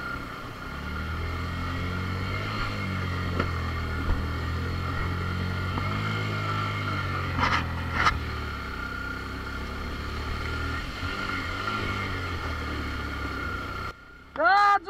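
Motorcycle engine running at low speed while fording a shallow stream, with a couple of brief water splashes about halfway through. The engine note eases off in the second half as the bike slows onto the gravel bank.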